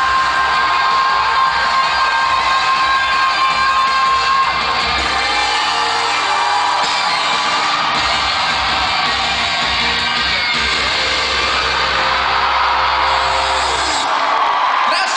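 Loud amplified music at a live pop-rock concert, with the audience cheering and whooping along.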